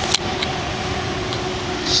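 A steady mechanical hum with an even hiss, with one click just after the start.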